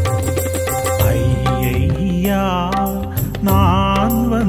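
Tamil Christian devotional song (keerthanai) with percussion strokes at first. About a second in a steady bass enters, and about two seconds in a melody line with vibrato.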